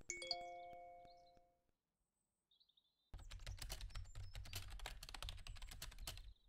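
A chat-message chime rings out as a single ding of several tones, fading away over about a second and a half. From about three seconds in comes rapid typing on a computer keyboard. Both are homemade Foley sounds.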